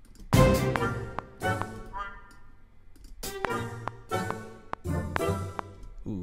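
Orchestral sample-library music played back from a computer: a short phrase of separate pitched notes with low accompanying hits, the loudest attack about a third of a second in.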